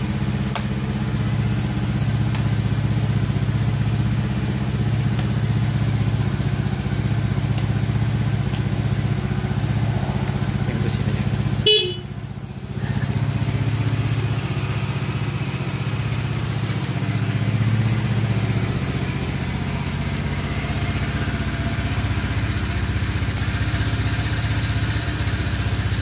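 Honda Beat scooter's small single-cylinder engine idling steadily. About halfway through comes one short, sharp, high-pitched sound, the loudest moment.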